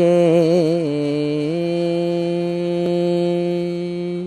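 A voice chanting a Sanskrit hymn draws out the last syllable of a verse. The pitch wavers through a short run for about a second and a half, then settles into one long, steady held note.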